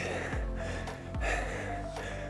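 Background music with a steady bass, over a man's heavy breathing: two hard breaths as he works through weighted lunges.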